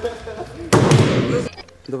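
A sudden hit with a crackling tail that dies away within about a second, an edited-in transition sound effect marking a cut.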